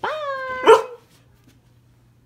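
A border collie answers a cue with a drawn-out whining call that drops slightly in pitch, then one sharp bark, the loudest sound, about two-thirds of a second in.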